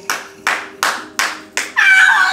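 Hands clapping about three times a second, five or six claps in a row, then a woman's laugh breaks in near the end.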